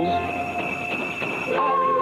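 Soundtrack of a vintage animated TV commercial: a single held note over a rough, noisy texture for about a second and a half, then singing with music resumes.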